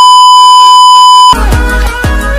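Loud, steady, high beep of a TV colour-bars test tone, cutting off sharply about a second and a half in as music with a heavy bass beat starts.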